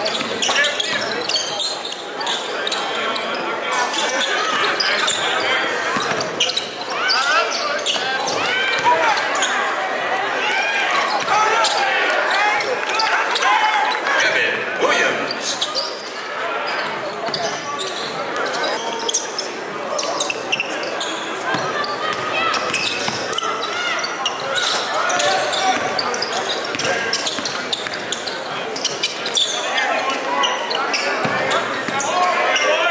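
Live basketball gym sound: many overlapping voices of the crowd and players echoing in a large hall, with a basketball bouncing on the hardwood floor from time to time.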